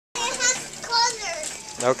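A young child's high-pitched voice making short calls that glide up and down, followed near the end by an adult saying "okay".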